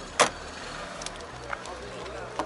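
Daewoo Nexia's boot lid pushed shut: one sharp latch clunk just after the start, then a couple of faint clicks.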